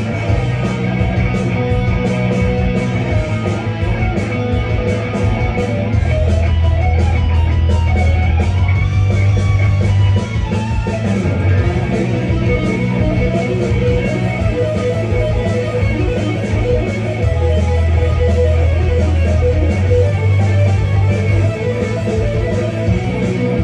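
Solo electric guitar played live through an amplifier: an instrumental piece with low notes held a few seconds at a time under quicker picked higher notes.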